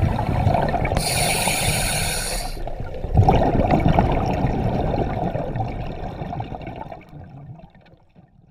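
Underwater sound of a swimmer breathing through a compact scuba regulator: a high hiss of air about a second in, then a louder rush of bubbles from about three seconds that fades away near the end.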